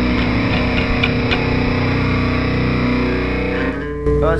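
Live rock band playing: distorted electric guitars holding a ringing chord, with a few drum hits in the first second or so. The sound drops off sharply just before the end.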